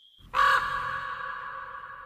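A single raven caw starts sharply about a third of a second in, then fades away slowly as a long, steady ringing tail: a sound logo for a production company.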